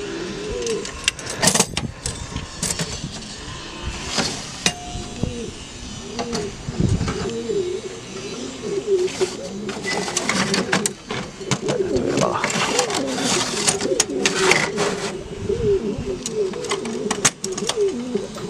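Domestic pigeons cooing continuously, several birds overlapping. Sharp metallic clicks and rattles come from a loft compartment's wire-grille door being handled and opened.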